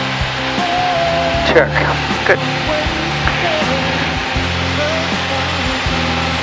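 Steady cabin drone of a Piper Warrior's four-cylinder piston engine and the airflow during a climb, with background music playing over it.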